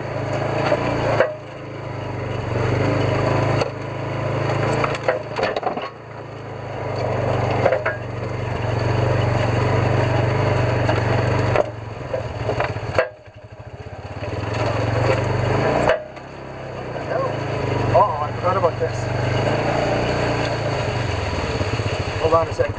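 Polaris side-by-side's engine running while it drives a bumpy forest trail. The engine note builds and then drops off sharply several times as the throttle is opened and released.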